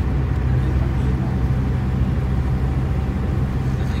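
Steady low engine drone and road noise, heard from inside a moving vehicle.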